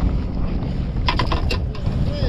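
Wind buffeting the microphone on an open boat on the water, a steady fluctuating low rumble; a couple of short clicks and spoken syllables come about a second in.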